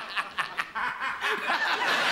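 Studio audience laughing, in short repeated bursts at first, then growing fuller and denser near the end.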